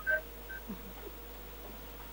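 A gap between greetings. There is a faint background hum with one steady tone and a couple of tiny short blips in the first half second.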